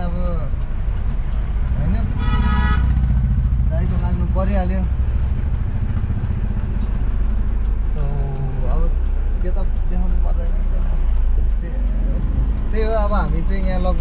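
Steady low road and engine rumble from a moving vehicle in city traffic, with a vehicle horn honking once briefly about two seconds in.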